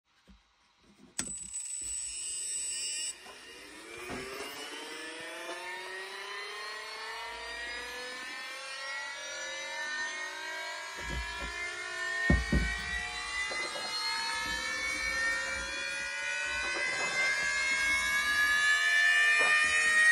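Losi Promoto-MX RC motorcycle's flywheel motor switched on and spinning up: after a click and a high steady tone for about two seconds, a whine of several tones rises slowly and steadily in pitch and grows louder as the gyro flywheel gains speed. A few low knocks around the middle.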